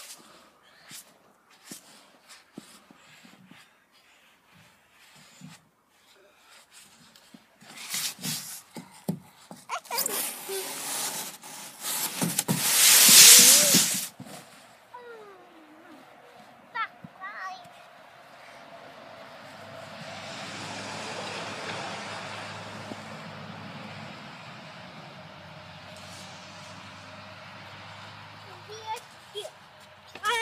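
Handling clicks and rustles on a snowy playground slide, building to a loud rushing swish of about two seconds near the middle as the rider goes down the slide through the snow. This is followed by a steady low hum with a soft hiss.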